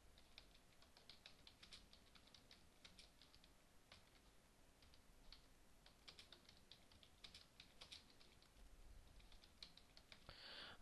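Faint typing on a computer keyboard: a run of light, irregularly spaced key clicks.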